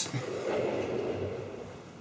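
A person's breath: one long noisy exhale that fades away over about a second and a half.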